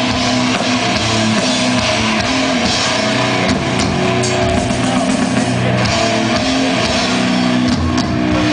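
Extreme metal band playing live at full volume: distorted electric guitar and bass riffing over a drum kit, dense and unbroken.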